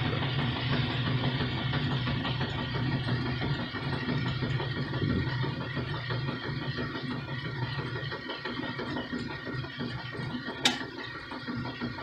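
A steady low mechanical hum, slowly growing fainter, with one sharp click near the end.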